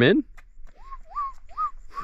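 A bird calling: four short whistled notes about two a second, each sliding up and then levelling off, fairly faint.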